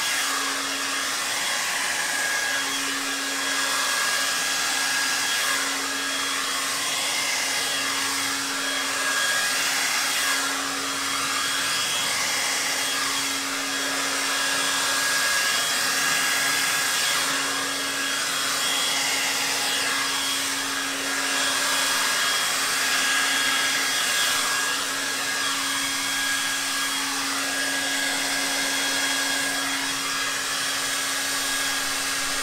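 A VS Sassoon Pro-Dry 2300 hair dryer blows wet acrylic paint across a canvas. It makes a steady rush of air with an even high whine and a low hum that comes and goes, swelling slightly as the dryer is moved.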